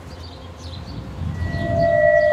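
Background score: a low rumbling bed, joined about halfway through by a steady sustained high note that holds on.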